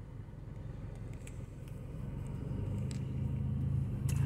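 Low engine and road rumble of a car moving slowly in city traffic, heard from inside the cabin, growing louder over the last second or so.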